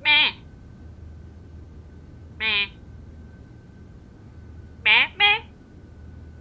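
A person's high-pitched, squeaky puppet voice giving short squeak-like calls: one at the start, one about two and a half seconds in, and two in quick succession near the end.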